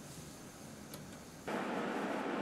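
Faint room tone with a single light click, then, about one and a half seconds in, a steady rushing noise starts suddenly and runs on.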